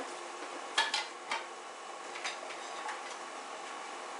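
Kitchenware being handled on a counter: a few sharp clicks and taps, about a second in and again about two seconds in, over a steady low background noise.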